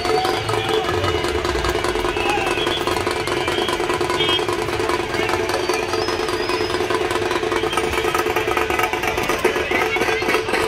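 Dhol-tasha drum troupe playing a fast, dense beat in a crowd, over a steady held two-note tone.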